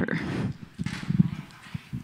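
Handling noise on a handheld microphone as it is carried and passed to another person: a brief rustle, then a cluster of soft, low bumps about a second in.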